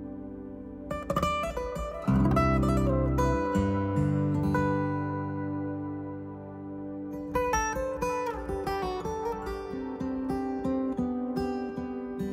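Fingerstyle acoustic guitar in open C G D E G D tuning playing a slow, gentle piece: low notes ring on under quick runs of plucked melody notes that start about a second in and again about seven seconds in.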